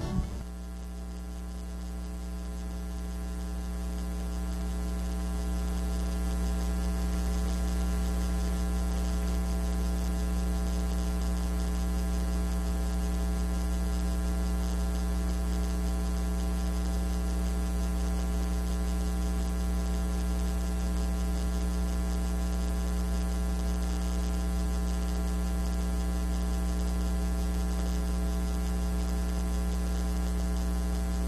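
Steady electrical mains hum from the sound system, a low hum with a buzzy edge. It swells over the first few seconds, then holds level.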